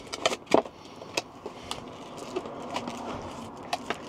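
Handling noise from unpacking a small 300-watt power inverter: a plastic bag rustling as the inverter and its cable are lifted out of a cardboard box, with scattered light clicks and taps.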